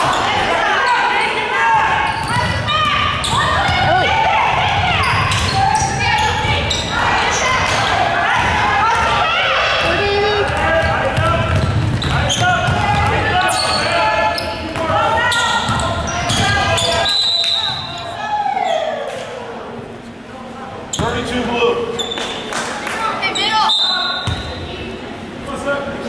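Indoor basketball game: a basketball bouncing on a hardwood gym floor amid overlapping voices of players and spectators, echoing in the large hall. The sound quietens for a few seconds past the middle.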